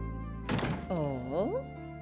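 Soft background music with steady held notes. Over it, about half a second in, a woman lets out a frustrated huff, then a whining groan whose pitch dips and then rises.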